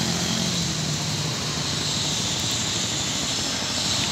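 Wind rushing over the microphone with the drone of a motorcycle engine underneath, heard while riding along a street; a steady, even noise.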